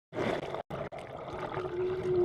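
Churning water and bubbles heard through an underwater camera, a rushing noise that cuts out briefly twice in the first second. A steady low hum joins near the end.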